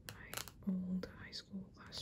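Long fingernails tapping and scratching on the card cover of a paperback textbook, a few sharp clicks in the first half-second. A short soft hummed 'mm' from a voice a little before the middle is the loudest sound.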